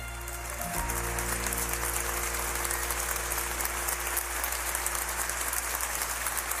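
Audience applause as a song ends, over the accompaniment's sustained final chord.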